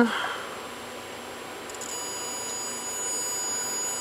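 A steady electronic buzz from the scanning tunneling microscope's X/Y amplifier, driven with a square-wave test signal at its full ±9 V swing. It grows slowly louder, and about halfway through a set of steady high tones joins it.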